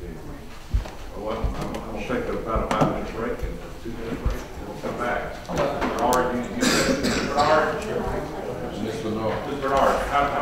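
Indistinct chatter of several people talking at once, with no single clear speaker. A few sharp knocks, one standing out less than a second in.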